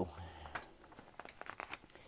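A page of a glossy picture book being turned: a faint papery rustle with a few soft crackles about a second and a half in.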